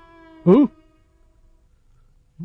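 A single short, meow-like cartoon animal call about half a second in, its pitch rising and falling, over the last held notes of a bowed-string music cue that die away soon after.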